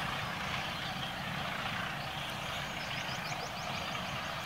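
Steady rumble of a slow passenger train rolling away along curved track, with a short run of faint high squeaks about halfway through.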